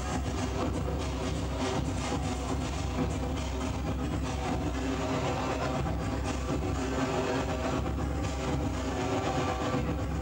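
Live electronic music: a steady drone of several held tones under dense, grainy noise with many fine clicks, with no clear beat, played on electronic gear.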